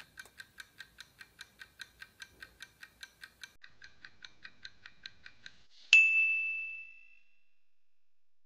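Countdown-timer ticking sound effect, about five quick ticks a second, then a single loud bell ding about six seconds in that rings out for about a second as the answer is revealed.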